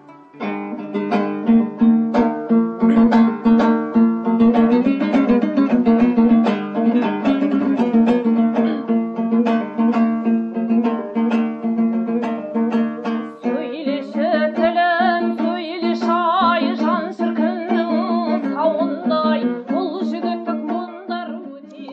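Dombra strummed in a fast, even rhythm over a steady low drone; about two-thirds of the way in, a woman's voice joins, singing a Kazakh heroic epic in the zhyrau style with heavy vibrato.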